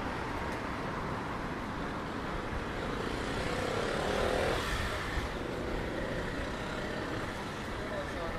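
Street traffic: a steady hum of road traffic with a vehicle passing close, its sound swelling and peaking about four seconds in, over faint background voices.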